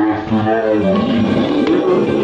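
A man's loud, drawn-out growling roar with a wavering pitch: a zombie roar as the made-up zombie lunges.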